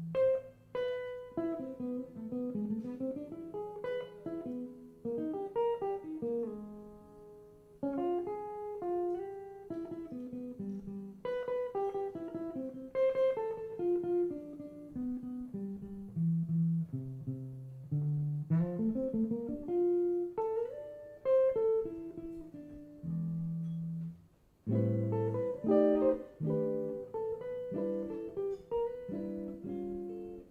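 Archtop jazz guitar playing a slow waltz unaccompanied, mixing chords with single-note melody lines that ring and decay, with a few short pauses between phrases.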